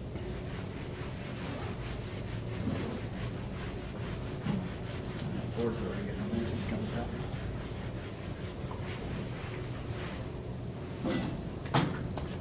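Whiteboard eraser rubbing across a whiteboard in repeated strokes, over a steady low hum, with a few sharp clicks near the end.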